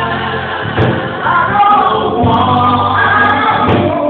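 Live gospel singing: a vocal group singing together over a steady bass line, amplified in a church hall.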